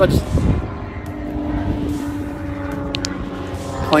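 Airplane flying overhead: a steady drone with a low hum running through it.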